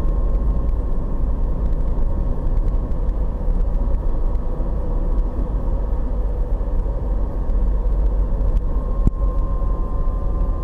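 Steady low rumble of road and engine noise inside a car's cabin while it drives at highway speed, with a faint steady hum over it. A brief click about nine seconds in.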